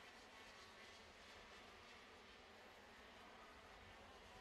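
Near silence with a faint steady buzz of distant two-stroke KZ2 kart engines.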